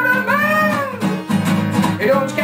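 Acoustic guitar strummed, with a man's voice singing one long note that rises and falls over about the first second.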